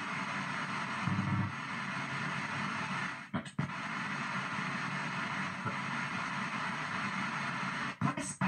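P-SB7 ghost box sweeping down the FM band, giving a steady rush of radio static through its small speaker. The static is broken by short fragments of broadcast audio, one louder and deeper about a second in, and by a brief drop-out about three and a half seconds in.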